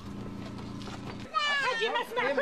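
A steady low hum, then, about halfway through, a young child crying out in a high, wavering wail.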